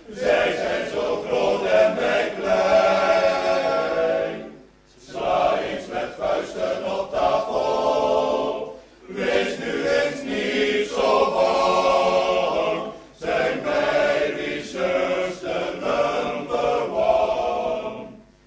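A choir singing a Dutch-language song in phrases, with short breaks roughly every four seconds.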